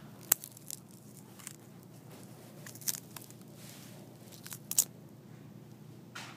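Smartphone being broken apart by hand: a series of sharp cracks and snaps of its plastic and glass as the body is bent and pried, the loudest just after the start and about a second before the end.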